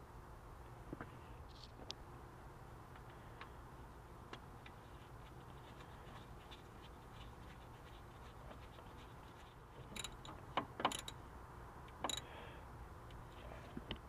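Hand gear-oil pump being worked to fill an ATV rear differential: faint clicks and scrapes over a low steady hum, with a few louder clicks near the end.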